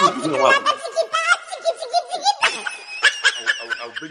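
A person laughing loudly in a long, high-pitched, wavering cackle. A second run of laughter starts about two and a half seconds in.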